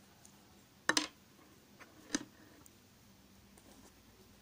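Metal knitting needles clicking against each other as stitches are worked: a quick double click about a second in, another sharp click just after two seconds, and a few faint ticks between.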